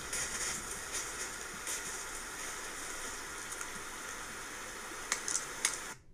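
Trail camera recording played back through speakers: a steady hiss with faint crackle and a few soft ticks, the last two near the end.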